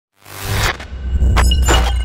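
Production-logo sound effect: a rush of noise, then a deep sustained bass rumble with two sharp hits in the second half, each leaving a high ringing tone.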